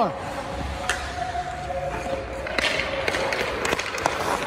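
Hockey goalie's skate blades scraping across the ice as he shuffles in the crease, with a few sharp knocks of stick and pads on the ice.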